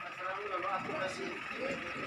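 Faint, indistinct voices of people talking in the background over a steady hum of ambient noise.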